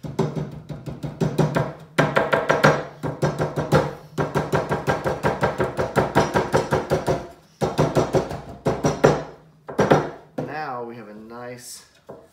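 Rubber mallet beating rapidly and steadily on the folded edge of a metal bottom-board screen laid on a wooden frame, about four to five blows a second with a few short breaks, to flatten the fold into a straight, rigid entrance edge. The blows stop about ten seconds in.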